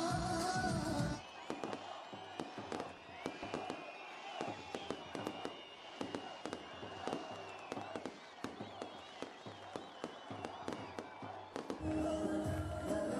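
Fireworks going off in an irregular string of sharp bangs and crackles, with thin high wavering whistles among them. For about the first second the loud music with singing is still playing, then it cuts away.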